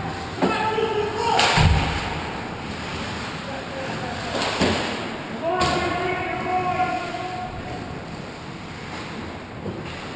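Ice hockey play: sharp knocks of puck and sticks, with one heavy thud about a second and a half in, and players shouting wordless calls twice.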